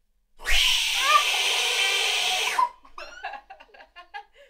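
A loud, harsh vocal shriek lasting about two seconds, followed by a string of short, gliding yelps.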